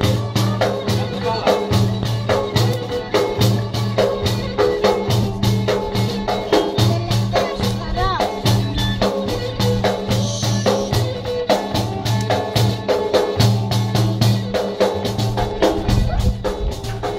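Live Greek folk dance music: a hand-held frame drum beats a quick, even rhythm over a steady low drone and a held melody line.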